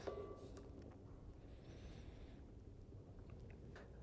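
Near silence: faint room tone, with a faint brief hiss about halfway through.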